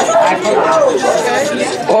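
A group of teenage boys talking and calling out over one another.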